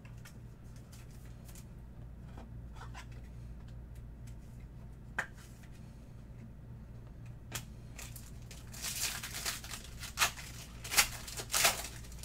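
Trading cards being handled and shuffled with faint clicks, then a card pack's plastic wrapper being torn open and crinkled in several sharp bursts in the last few seconds. A low steady hum runs underneath.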